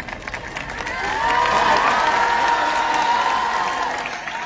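A large crowd applauding and cheering: clapping throughout, with many voices cheering together from about a second in.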